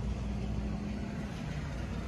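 A steady low mechanical hum with no sudden sounds.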